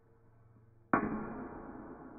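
A single sudden heavy bang about a second in, ringing on and dying away slowly.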